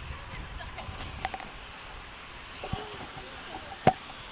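Outdoor crowd ambience on a busy walkway: faint chatter of passers-by over a steady background, with a few light clicks and one sharp click near the end.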